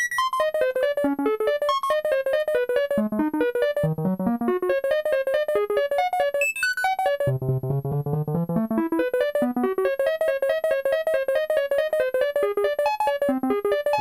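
Doepfer modular synthesizer playing a rapid stream of short random-pitched notes through an A-188-2 bucket-brigade (BBD) analog delay on its 3328 stage, the dry notes mixed with their delayed copies. About halfway through there is a quick upward pitch sweep, then lower notes come in.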